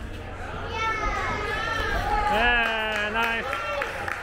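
Young voices calling out, with a high call about a second in and one long, drawn-out shout in the middle.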